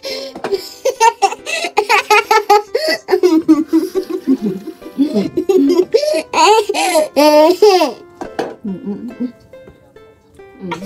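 A young girl laughing hard in repeated bursts, with background music underneath.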